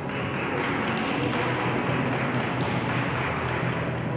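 Audience applauding over background music, starting suddenly and dying away near the end.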